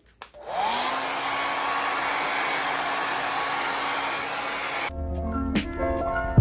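Handheld hair dryer switched on: its motor whine rises over the first half second, then it blows steadily for about four seconds. Near the end the sound cuts off suddenly and music with a beat takes over.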